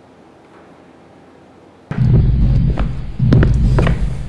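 Quiet room tone, then about two seconds in a loud track with a heavy low bass and a few sharp hits starts suddenly, most like music.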